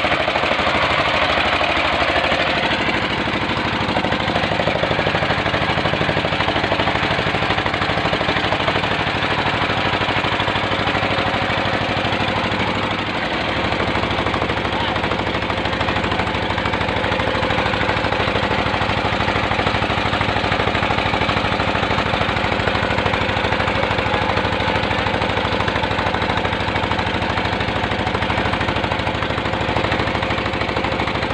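Small wooden boat's engine running steadily with a fast, even knocking beat while the boat moves across the water; its note shifts slightly about halfway through.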